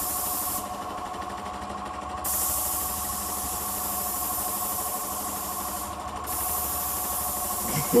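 Spray gun on a hose hissing in bursts as its trigger is pulled and released: a short burst, a pause of about a second and a half, then a long spray with a brief break. Under it runs a steady whine from the spraying machine.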